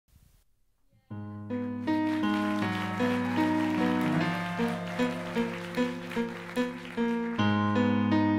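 Live band's keyboard playing the instrumental introduction of a musical-theatre song: a repeating pattern of notes over held low chords, starting about a second in.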